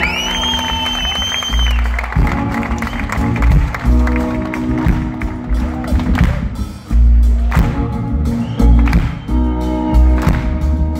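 Live band music, loud, with upright double bass and electric guitar over a heavy bass end. A shrill whistle rises and holds over the first second or two.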